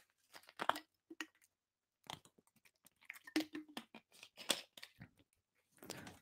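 Faint, scattered small clicks and rustles, a few a second, with no steady sound behind them.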